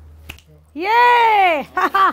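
A sharp click about a third of a second in, then a loud, high-pitched, drawn-out vocal exclamation that rises and then falls in pitch, followed by a shorter cry near the end.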